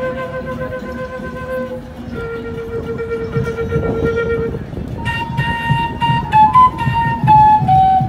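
A flute playing a slow melody through a PA: two long held notes, then a quicker phrase of higher notes starting about five seconds in, over a low pulsing accompaniment.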